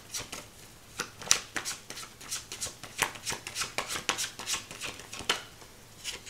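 A Sharman-Caselli tarot deck being shuffled by hand: a quick, irregular run of soft card flicks and taps that stops shortly before the end.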